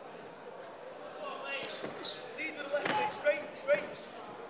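Boxing gloves landing in a close-range exchange: a quick flurry of sharp thuds in the second half, mixed with shouting voices from ringside.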